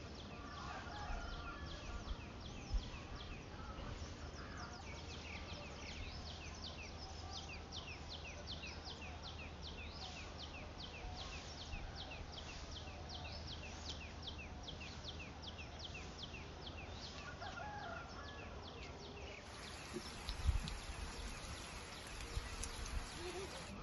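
A small creature in the field gives a high, quick chirp over and over, about three times a second, against faint outdoor hiss. Near the end the sound changes to the steady hiss of rain, with a couple of low thumps.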